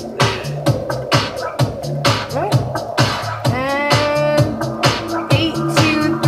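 Two records mixed together through a Serato Scratch Live turntable setup, their beats matched so that they run in time, with a steady beat about twice a second. A pitched sound swoops up about three and a half seconds in.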